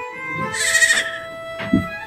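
A short, wavering animal call about half a second in, over soft background music.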